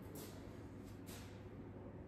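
Quiet indoor room tone: a steady low hum, with two brief soft scuffs, one just after the start and one about a second in.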